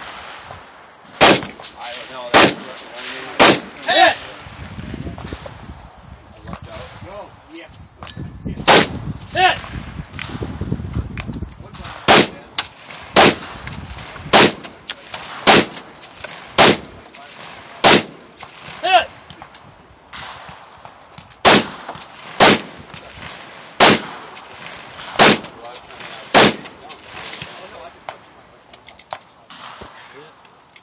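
About fifteen firearm shots in runs, roughly one a second with short pauses between strings. A few are followed by a brief ringing clang, typical of steel targets being hit.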